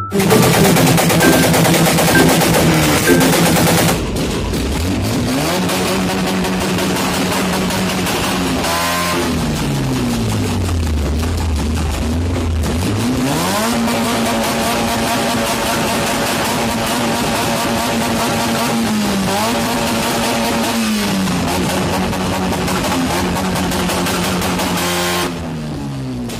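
Modified car engines revved hard at a car show through a loud, rasping exhaust. A steady high-rev drone for the first few seconds cuts off abruptly. Then another engine is held at high revs, dropping back toward idle about ten seconds in, climbing again, and dipping briefly twice more later.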